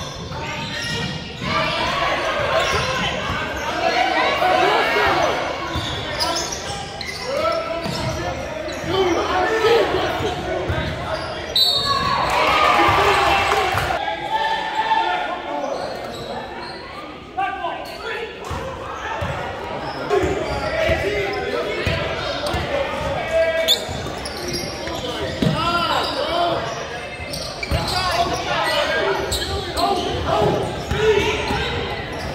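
Basketball being dribbled on a hardwood gym floor during a game, with the constant chatter and shouts of spectators and players echoing in a large hall.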